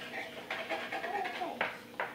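Soft, wordless vocal murmuring from a young child, with one short click near the end.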